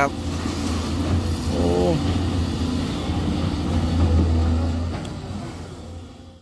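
SANY SY205C hydraulic excavator's diesel engine running steadily under load as it digs into rock, fading out near the end.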